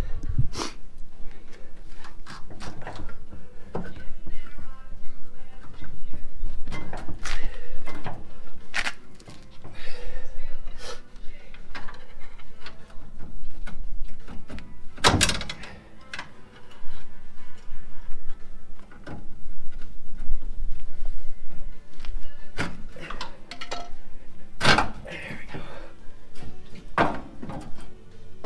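Background music over irregular knocks and clunks from a Toyota 4Runner's rear suspension as the factory coil spring is worked out of its seat by hand, with two louder clunks about 15 and 25 seconds in.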